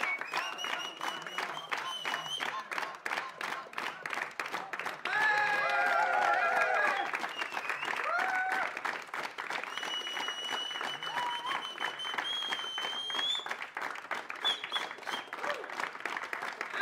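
Concert audience applauding, with long high whistles and cheering. The cheers swell to their loudest about five seconds in, while the band comes back on stage for a bow.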